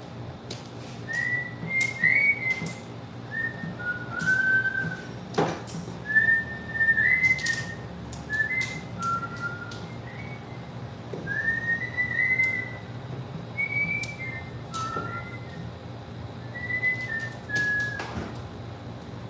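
A person whistling a tune in short notes, over the clicking of mahjong tiles being drawn and discarded on the table, with one sharper tile knock about five seconds in.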